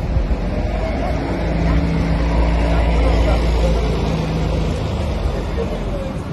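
Road traffic: a motor vehicle's engine hum and low rumble going past close by, swelling through the middle and easing off near the end.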